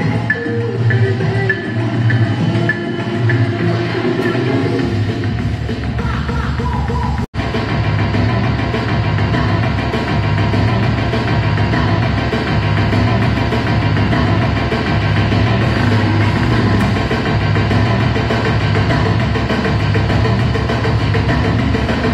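DJ dance-music mix playing loud with a steady beat and busy percussion. The music drops out for an instant about seven seconds in, then carries on.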